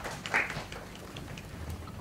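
Low hall room noise in a pause between speakers, with a few faint clicks and a brief soft sound about a third of a second in.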